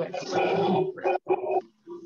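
A brief rough, noisy vocal sound from a second person on the video call, then a few quick syllables of speech.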